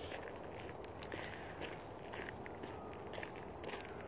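Faint footsteps of a person walking at a steady pace, a soft step about every half second over a low outdoor background.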